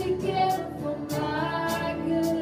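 Live worship band playing: women singing held notes over keyboard and electric guitar, with drum or cymbal hits keeping a steady beat about twice a second.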